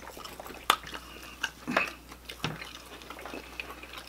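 Eating sounds at a table: people chewing fried chicken wings, with scattered sharp wet mouth clicks and smacks.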